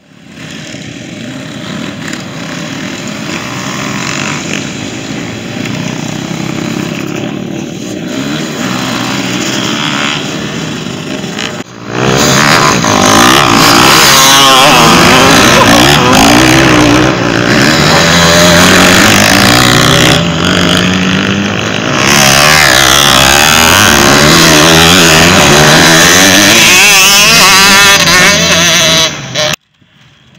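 A pack of motocross dirt bikes revving as they pull away from the start together. About twelve seconds in it turns much louder and closer: dirt bike engines revving hard, their pitch climbing and dropping again and again as the riders accelerate and shift.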